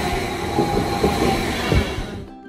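Electric double-decker passenger train running in along the platform: a steady loud rush of wheels on rails with a high whine and a few heavy low thumps from the wheels.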